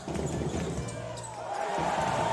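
Game sound from a basketball court: a ball being dribbled over the noise of the crowd in the arena.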